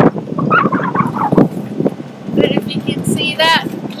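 Wind buffeting the microphone on a sailboat's open deck, in ragged gusts, with a short snatch of a voice near the end.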